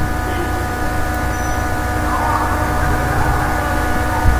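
Steady background hum and hiss with several constant tones, unchanging throughout.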